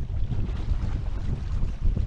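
Wind buffeting the microphone of a camera mounted on a sailing catamaran, a gusty low rumble, with water washing along the hulls.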